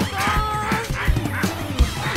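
A cartoon dog barking over background music with a beat.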